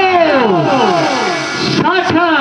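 A performer's voice drawing out a long note that slides down in pitch, followed near the end by a second note that rises and then falls, in the sung or declaimed style of Ramlila stage delivery.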